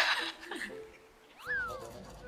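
A single short pitched call about one and a half seconds in, sliding sharply up and then gliding back down. It follows a brief voice at the start.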